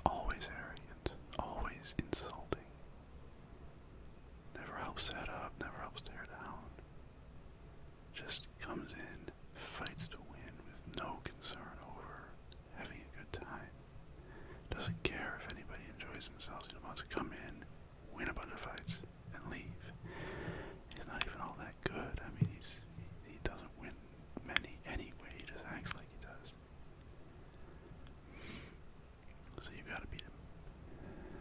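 A man whispering close to the microphone in short, breathy phrases with pauses between them.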